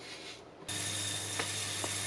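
Sesame seeds pouring into a dry stainless-steel saucepan, a steady hissing patter that starts suddenly about two-thirds of a second in, over a low hum.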